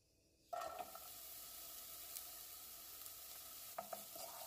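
Chopped onion hitting hot cooking oil in a pan and starting to sauté: a faint, steady sizzle that begins about half a second in.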